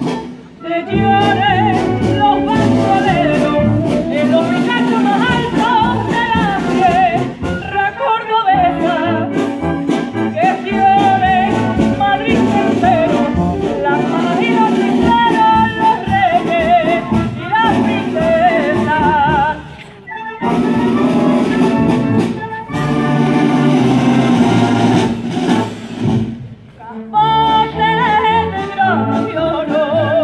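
Wind band of saxophones, brass and drums accompanying a woman singing a copla into a microphone, her voice amplified through loudspeakers. Her long notes waver. The music drops away briefly between phrases a few times.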